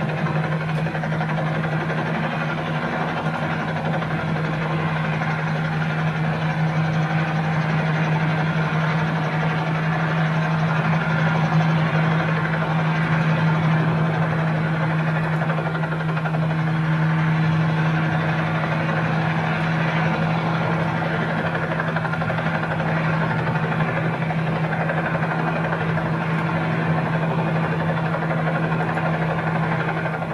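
Aircraft engine running steadily in the cabin during flight, a continuous loud drone with a strong low hum.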